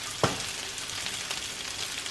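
Steady sizzling of food frying in butter and oil on a stovetop: scrambled eggs stirred with a silicone spatula in a nonstick skillet, and diced pre-boiled potatoes crisping in a second pan. One sharp tap sounds about a quarter second in.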